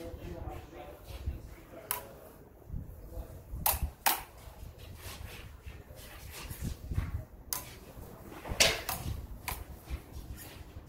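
Steel sparring blades of a rapier and a jian striking together: about six sharp clinks scattered through, the loudest near the end, over a low rumble.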